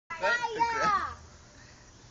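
A child's high voice speaks briefly for about the first second, then only faint outdoor background noise remains. No firecracker bangs are heard.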